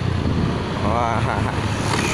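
Motorcycle on the move: a steady low engine and road rumble with wind on the microphone, and a short voice sound about a second in.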